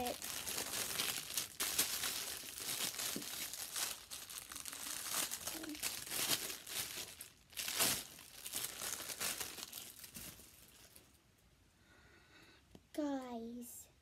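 Clear plastic packaging bag crinkling and rustling as it is handled and opened to take out a silicone pop-it, with a loud crackle about eight seconds in. The crinkling dies away after about ten seconds, and a brief voice follows near the end.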